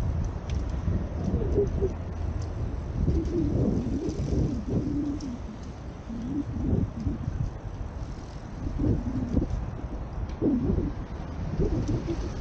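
Wind buffeting the microphone of a helmet camera on a moving bicycle: a constant low rumble with irregular wavering hum, over faint road traffic.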